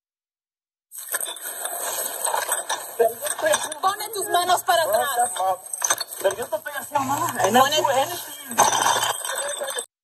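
Police body-camera audio starting about a second in: unintelligible voices of people in a scuffle on the ground, over clinking and rustling of gear, with a low hum from the camera's recording. The sound cuts out briefly near the end.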